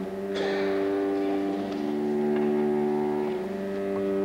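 String quartet playing slow, held chords, with a short noise about half a second in.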